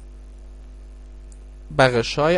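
Steady electrical mains hum on the recording, a low buzz with evenly spaced overtones; speech begins near the end.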